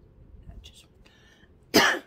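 A woman coughing once, a short, loud cough near the end.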